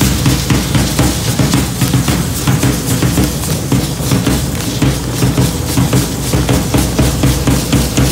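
Matachines dance drumming: a drum beaten in a steady, quick rhythm, with a dense crisp clatter in the highs over it.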